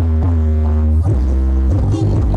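Loud electronic dance music played through a large outdoor sound system, with very heavy deep bass under a synth line that slides down in pitch at the start and then holds.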